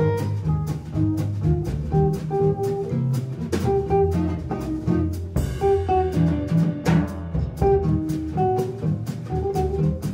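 Gypsy jazz (jazz manouche) combo playing a swing tune live: acoustic rhythm guitar chopping a steady beat, double bass and drum kit underneath, and a melody line over the top.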